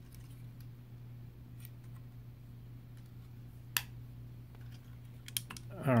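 Small plastic clicks of LEGO pieces being handled as a minifigure is fitted back into a toy helicopter's cockpit, with one sharper click near the middle and a few more near the end, over a steady low hum.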